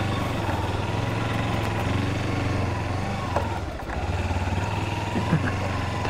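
Kawasaki Versys X300's parallel-twin engine running steadily at low speed on a dirt trail, easing off briefly about halfway through before picking up again.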